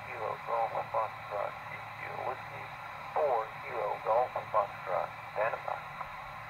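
A distant amateur radio operator's voice calling CQ, received over a portable HF transceiver's speaker: thin and tinny, in short phrases over a steady hiss of band noise.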